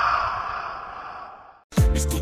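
A long breathy whoosh sound effect, fading away over about a second and a half before it stops. Near the end, music with a heavy bass beat comes in.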